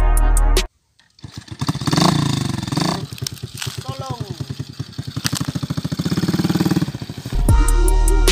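Small motorcycle engine running, with rapid, even firing pulses, and a short call from a voice about four seconds in. Background music plays briefly at the start and comes back near the end.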